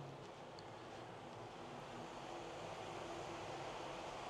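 Steady outdoor background noise with a faint low steady hum.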